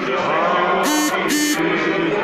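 Many voices singing or chanting together in a large reverberant hall, with two short, sharp blasts from a noisemaker about a second in, half a second apart.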